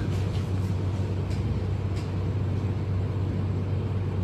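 Steady low room hum, with a few faint clicks from a laptop keyboard or trackpad.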